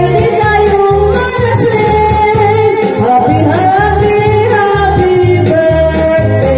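A woman singing karaoke into a handheld microphone over a loud backing track with a pulsing bass beat.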